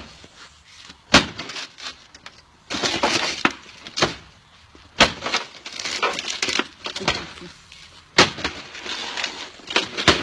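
An axe smashing a television set: about five sharp, separate blows, with the screen's glass and the casing crunching and breaking up between them.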